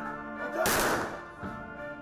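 Honor guard rifles fired together in a single volley, a sharp crack with a short echoing tail just over half a second in: a ceremonial gun salute. Background music with steady held notes continues underneath.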